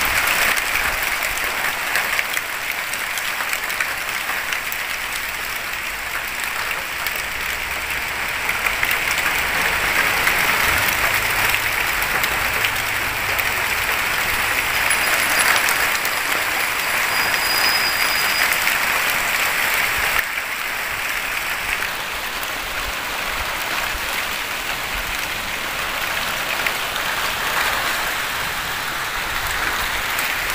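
Heavy rain pouring down steadily: a dense, even hiss that swells slightly and eases again.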